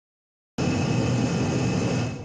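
Reddy Heater torpedo heater running on waste motor oil: the blower and burner make a loud, steady rushing noise with a thin, steady high whine. It starts abruptly about half a second in.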